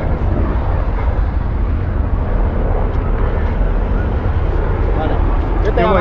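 Steady low rumble of wind on the microphone mixed with the road noise of a moving car, with no single event standing out. A voice starts shouting right at the end.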